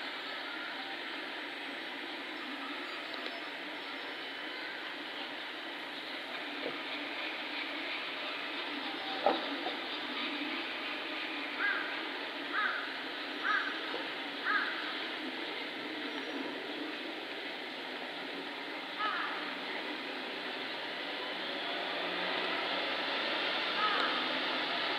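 Steady outdoor background murmur with faint distant voices. About halfway through, four short calls come about a second apart, with single ones a little before and near the end.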